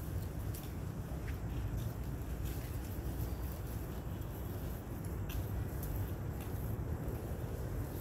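Steady low outdoor rumble, with a few faint short clicks scattered through it.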